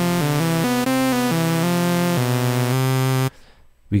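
Native Instruments Massive software synthesizer playing a quick run of notes that changes pitch several times, then cuts off a little after three seconds in. One oscillator follows the keys while a second oscillator, its key tracking turned off, stays at a single fixed pitch layered above.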